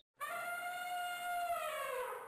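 Sound effect of an outro logo sting: one long pitched tone with many overtones, holding steady and then sliding a little lower as it fades out.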